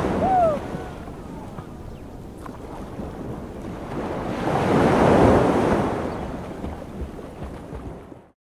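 Rushing noise like waves breaking on a shore, swelling up twice and fading, with a short falling call-like whistle just after the start.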